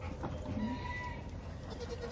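Nigerian Dwarf goats bleating faintly: a short call near the start and a thinner, longer one around the middle.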